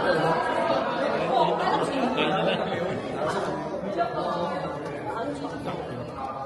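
Indistinct chatter: several voices talking over one another, with no clear words.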